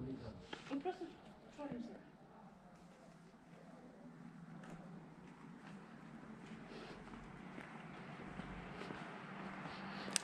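Quiet street ambience while walking: faint voices in the first two seconds, then soft footsteps over an even background noise that grows slowly louder.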